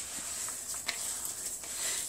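A hand mixing and squeezing a moist ground-almond and butter filling in a plastic bowl: soft, faint rustling and squishing with a few light clicks.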